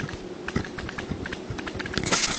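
Pen tip tapping and scratching on paper in a string of short, irregular clicks, as handwritten labels are written with a Livescribe smartpen and picked up close by the pen's own microphone.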